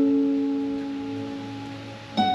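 Acoustic guitar notes ringing out and slowly fading in a slow instrumental piece.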